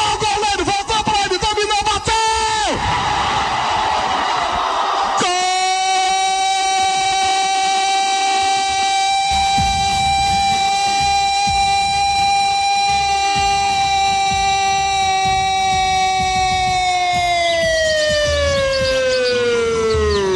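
A football commentator's drawn-out goal cry after a penalty goes in: a brief excited shout, then one loud note held steady for about twelve seconds that slides down in pitch near the end.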